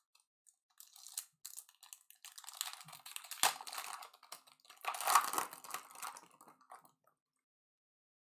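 Plastic wrapper of a trading-card pack being torn open and crinkled by hand. The crackling comes in bursts, with a sharp tear about three and a half seconds in and a loud spell of crinkling around five seconds, then stops.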